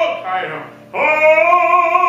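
A woman's operatic singing voice: a held note with vibrato ends in a falling slide, and about a second in a new note begins with a quick upward scoop and is held.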